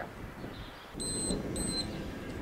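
Workout interval timer giving two short, high beeps about half a second apart, the signal to start an exercise interval, over a low rumble.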